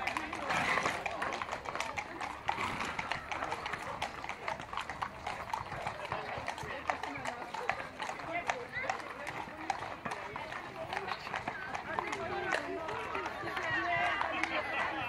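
Hooves of several ridden horses clip-clopping on an asphalt road at a walk: many overlapping hoofbeats throughout, with people talking alongside.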